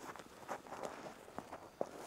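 Faint footsteps in snow: a few irregular steps.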